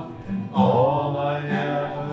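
Several voices singing together to a strummed acoustic guitar. The singing dips for a moment at the start, then comes back with a long held note.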